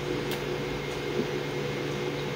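A steady low machine hum over a faint hiss, unchanging throughout.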